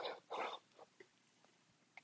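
A man's mouth noises: two short, faint breathy sounds in the first half-second, then a couple of tiny clicks around a second in.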